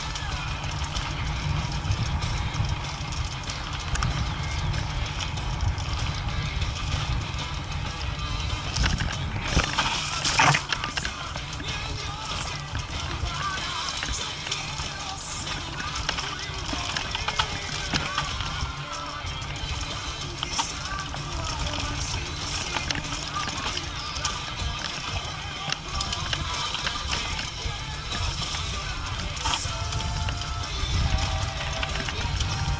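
Background music laid over the rumble and rattle of a mountain bike descending a rough dirt trail, with a louder jolt about ten seconds in.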